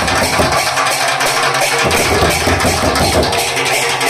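Loud live folk-band music: large drums beaten with sticks and hand cymbals clashing in a fast, dense rhythm, with the deepest bass dropping out briefly twice.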